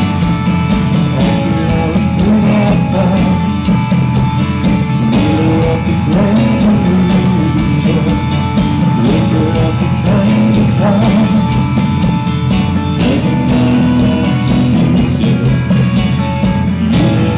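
Live band music: a man singing while beating a standing drum with sticks, over keyboard accompaniment.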